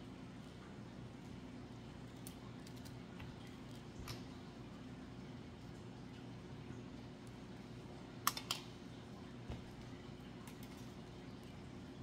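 Light clicks and ticks of thin 20-gauge craft wire stems and wire cutters being handled, with two sharper clicks in quick succession about eight seconds in, over a steady low hum.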